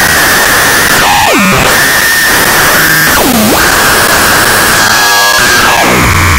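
Harsh synthesizer noise from a VCV Rack software modular patch of an Instruo Cš-L dual oscillator and a Plaits macro oscillator: a dense hiss under a steady high whistle. A pitch swoops down and back up twice as the Cš-L's coarse frequency knob is turned, with a third dive starting near the end.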